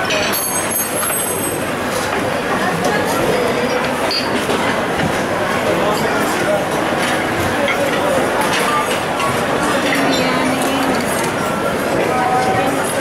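Busy restaurant din: many overlapping voices with dishes and utensils clinking now and then.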